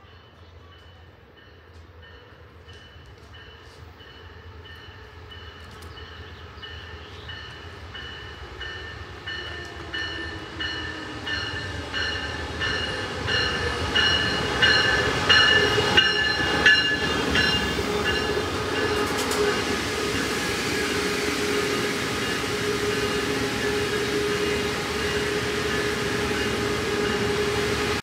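An Amtrak Pacific Surfliner train led by a Siemens Charger diesel locomotive pulls into the station. A bell rings in steady strokes that grow louder as it approaches. After the locomotive passes, a steady engine hum and the rumble of the coaches rolling by take over.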